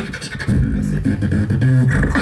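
A beatboxer beatboxing into a microphone: a held, low hummed bass tone broken by sharp, clicky snare and hi-hat sounds made with the mouth, in a steady rhythm.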